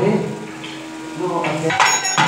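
A sung temple chant fades out over a murmur of voices. Near the end, metal percussion starts up: quick repeated clanging strikes that leave a high ringing.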